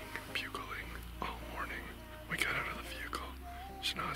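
Whispered speech from a man, with soft background music under it.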